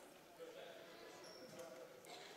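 Near silence: faint gymnasium room tone with faint distant voices.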